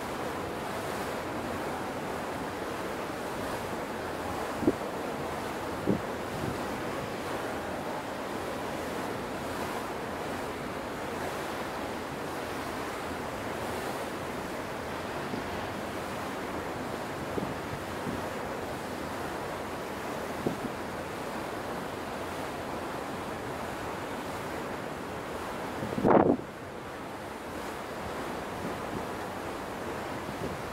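Steady wind blowing on the microphone over the wash of sea water from a moving ship. A few brief knocks are heard, and a short, louder buffet of noise comes near the end.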